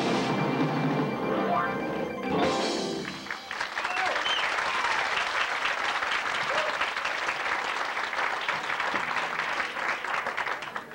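Music comes to an end about three seconds in, and an audience applauds.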